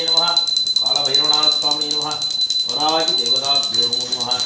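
A small hand bell rung continuously during a Hindu puja, a steady high ringing tone, under a man's voice chanting mantras in a sing-song way.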